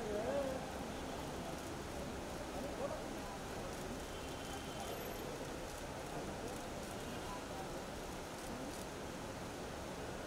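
Indistinct voices over a steady background hubbub, with a voice a little clearer in the first half second.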